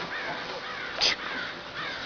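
A single short, harsh animal call about halfway through, the loudest sound here, over faint background chirps.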